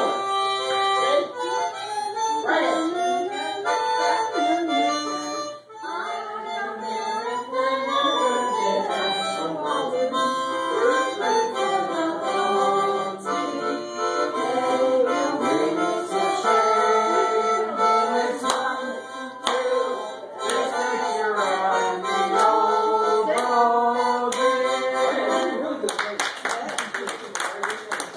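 Harmonica played solo: a continuous reedy melody with chords, phrase after phrase, with a brief break about six seconds in.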